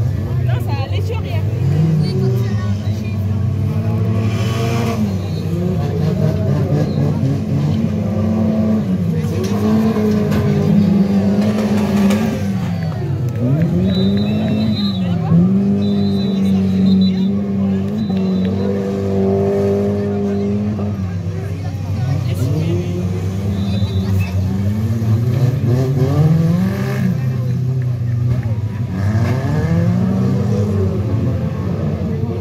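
Stock car engines revving hard, their pitch climbing and dropping again every few seconds, with one engine held high and steady for several seconds midway.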